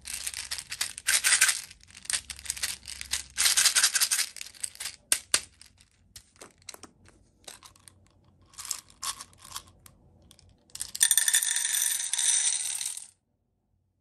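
Small plastic beads rattling inside a plastic toy baby bottle as it is shaken and handled, with scattered clicks in between. About eleven seconds in, the beads pour out into a metal muffin-tin cup in a loud clattering rush with a metallic ring, which cuts off suddenly.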